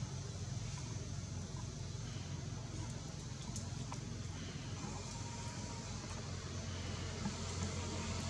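Steady outdoor background noise: a constant low hum under an even high hiss, with a few faint clicks about three to four seconds in.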